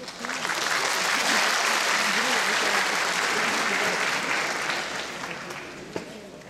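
An audience applauding in a hall: the clapping builds up just after the start, holds steady, and thins out over the last second or so.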